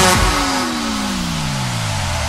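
Electronic pop track breaking down: the beat cuts out and a synth sweep glides steadily downward in pitch over a wash of noise.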